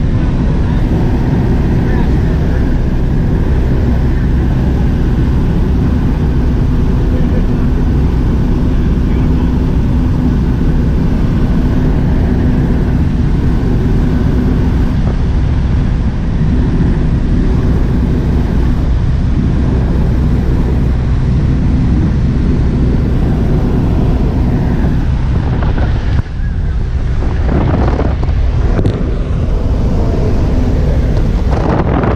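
Steady drone of a high-wing single-engine light airplane's engine and propeller, heard from inside the cabin in level flight, with wind noise on the microphone.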